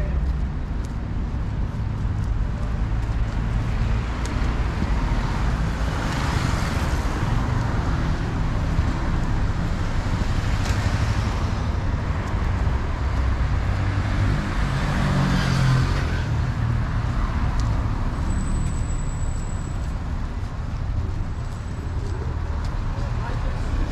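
Road traffic on a city avenue: a steady low rumble, with three vehicles passing close by, each swelling and fading, about six, eleven and fifteen seconds in.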